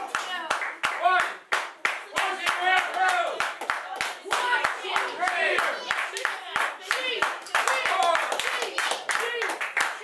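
Small crowd clapping in a steady rhythm, about three claps a second, with voices shouting and calling out over it.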